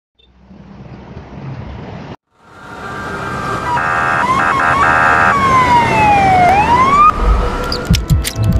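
Emergency-vehicle siren: a quickly switching tone, then one slow wail that falls and rises again, over a swelling rush of noise. Before it, a low rumble cuts off suddenly about two seconds in, and low thumps begin near the end.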